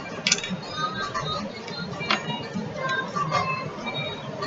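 Background music with faint voices under it, and a couple of light clicks from small plastic jars and lids being handled on a mat.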